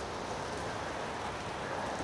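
A pause in the talk filled by a steady, even hiss of outdoor background noise.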